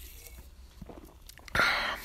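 Someone sipping beer: faint mouth and swallowing clicks, then a loud breathy exhale about one and a half seconds in.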